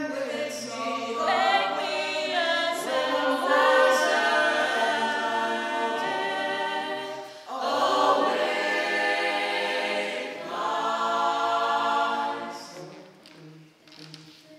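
Mixed male and female a cappella group singing in close harmony, with a microphoned voice out front. The chord breaks off briefly about seven and a half seconds in, and the singing fades away near the end.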